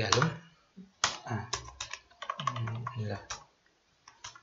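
Typing on a computer keyboard: quick, uneven runs of key clicks, with a short pause near the end.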